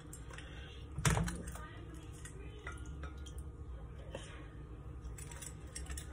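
Handheld citrus press squeezing a fresh strawberry over an iced glass: a sharp knock about a second in as the press closes, then faint dripping of juice.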